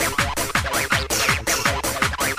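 Makina, Spanish hard dance music, from a DJ mix: a fast, steady kick drum with bright synth sounds above it.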